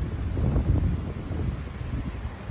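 Wind buffeting the microphone outdoors, an uneven low rumble, with a couple of faint high bird chirps in the first second.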